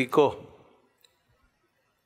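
A man's voice ends a spoken word in Hindi just after the start, then near silence with one faint click about a second in.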